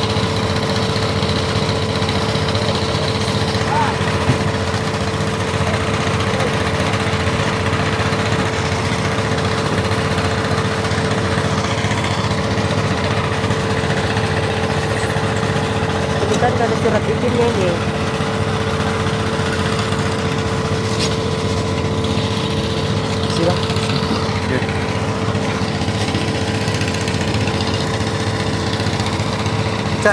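An engine running steadily at an unchanging speed, a constant drone with a steady hum.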